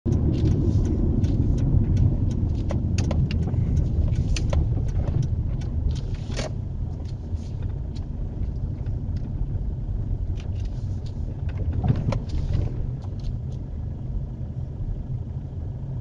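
Road and engine rumble inside a moving car's cabin, with scattered light clicks and knocks. The rumble eases about six seconds in as the car slows.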